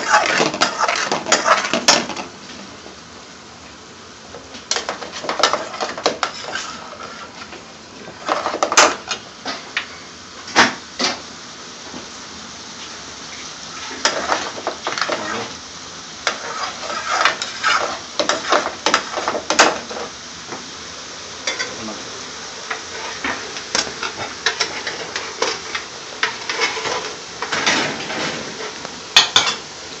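A metal ladle scraping and clanking against an aluminium pan as a curry sauce is stirred, in bursts of quick clicks and scrapes. A steady low hiss runs between the bursts.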